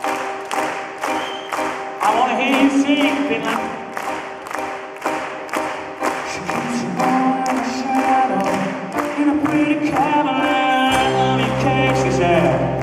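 Live rock music: piano chords under a male lead singer, with the audience clapping along in time, about three claps a second. A bass line comes in near the end.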